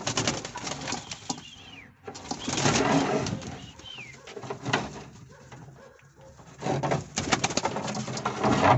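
A domestic pigeon flapping its wings in a small cage, in several flurries of wingbeats with short pauses between them.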